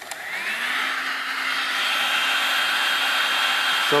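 Electric heat gun switched on: its fan whine rises over the first second as the loudness builds, then it runs with a steady blowing whir.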